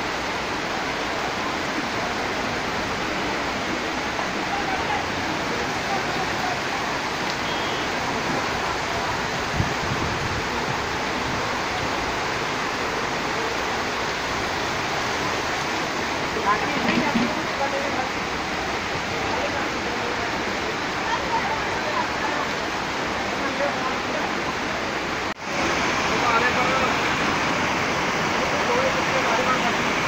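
Heavy rain pouring down and muddy floodwater rushing along a street: a steady, loud hiss of water. It cuts out for an instant near the end and comes back slightly louder.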